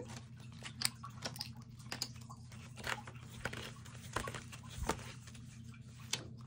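Pages of a book being leafed through by hand: soft paper rustling with a scatter of light clicks and flaps as the sheets turn.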